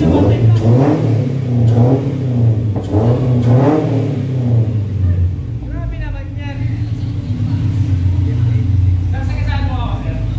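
Toyota 86's flat-four engine running, revved a few times in the first half, then settling to a steady idle.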